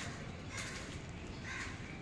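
Short bird calls, about three, over a steady low background hiss.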